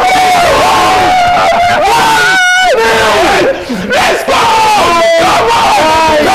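Several men yelling and screaming in jubilation at a goal, long held shouts overlapping with barely a break.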